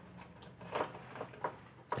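Faint scraping and a few light clicks from a thin tool prying an adhesive LED backlight strip off a TV's metal back panel, with the loudest bit a little under a second in.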